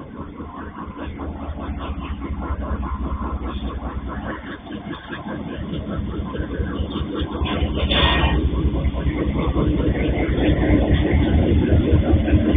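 Freight train passing close by: low engine noise and rolling wheel noise growing steadily louder as it approaches, with a short, higher-pitched burst about eight seconds in.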